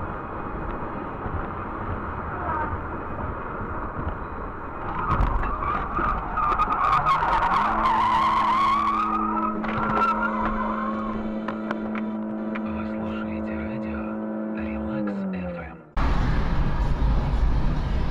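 Car at speed with steady road noise, then tires squealing for several seconds as it slides, with a few sharp knocks. A long steady tone sounds over the squeal and sags in pitch as it stops. Near the end there is a sudden change to loud road rumble from inside another moving vehicle.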